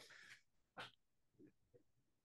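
Near silence in a pause in speech, with a faint breath at the start and a soft mouth click a little under a second in.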